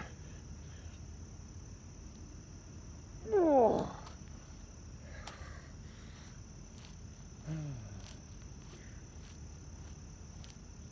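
A man's loud groan falling in pitch about three seconds in, then a shorter, quieter one near eight seconds, as he gets up from push-ups. Crickets keep up a steady high-pitched trill underneath.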